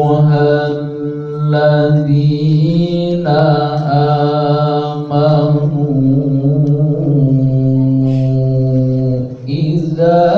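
A man's voice reciting the Qur'an in melodic qira'at (tilawah) style, holding long ornamented notes that waver and glide between pitches. A few short breaks fall between phrases, and one long lower note is held for about three seconds before a pause for breath near the end.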